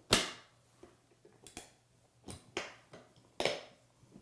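Latches of a hard plastic protective case snapping open: five sharp clicks, the loudest at the very start and four more spread over the next three and a half seconds.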